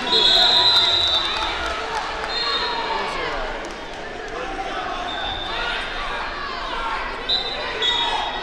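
Referee whistle blasts over steady crowd chatter in a large gym: a long blast of about a second at the start, then shorter blasts a few seconds apart and again near the end.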